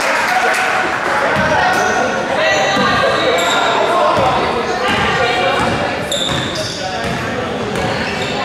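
Basketball being dribbled on a hardwood gym court amid indistinct shouting and calling voices from players and spectators, echoing in the gym.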